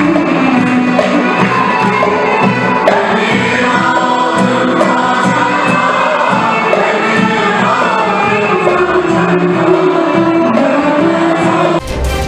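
Mixed choir of men and women singing a song together with instrumental accompaniment, keyboard among it. Just before the end it cuts abruptly to theme music.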